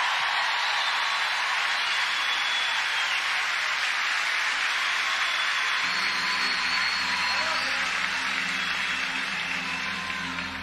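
Concert audience applauding and cheering after a song. About six seconds in, a low held chord from the band comes in underneath as the applause starts to fade.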